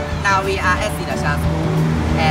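A few short words from young people's voices over steady road-traffic noise.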